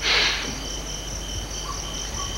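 Crickets chirping steadily in a rapid, even pulse, with a short hiss at the very start.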